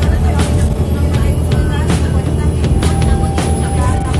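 Steady low rumble of a bus's engine and road noise heard from inside the passenger cabin, with background music with a regular beat laid over it.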